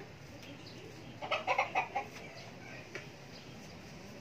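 A chicken clucking, a quick run of four or five calls about a second in, over steady low background noise.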